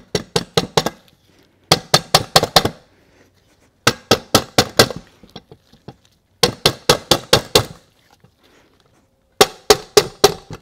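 Rubber mallet tapping an NP246 transfer case's planetary carrier down past its bearing into the annulus gear. The taps come in quick runs of five to seven, with short pauses between runs. The new parts fit tight and go in little by little.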